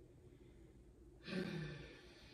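A woman's sigh: a breathy exhale of about a second with a falling voiced tone, starting a little over a second in. It is the sigh of someone giving up on a word she cannot recall.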